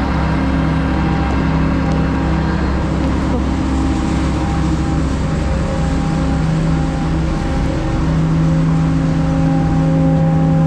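Heavy diesel engine running at a steady speed, its even hum unbroken.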